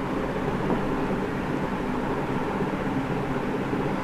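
Steady background hiss with a faint low hum, even throughout with no distinct events: room tone, such as from a fan or air conditioner running.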